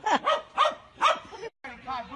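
A person laughing hard in quick repeated bursts, falling in pitch, that tail off about a second in; after a short break, faint voices.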